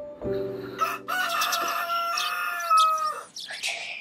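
A rooster crowing once, a long cock-a-doodle-doo of about two seconds, used as the morning cue at a cut from night to the next morning, over a soft steady musical tone.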